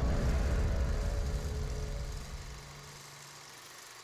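Closing logo sting: a low rumbling swell with a faint held tone, fading out over about three seconds into a soft hiss.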